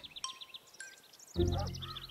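Soft background music with light, high twittering chirps. About a second and a half in, a child's voice comes in over it.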